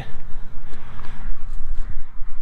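Wind rumbling and buffeting on the microphone, with a few faint steps on gravel.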